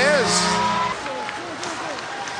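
Arena goal horn sounding a steady low tone over a cheering crowd after a home goal. The horn cuts off about a second in, and crowd noise goes on at a lower level.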